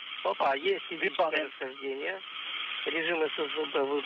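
A voice coming over a radio link, thin and band-limited with a steady hiss under it: the space-to-ground communications loop during the Soyuz undocking.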